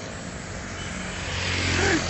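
Road traffic noise, with a passing vehicle's engine hum drawing nearer and growing louder over the second half.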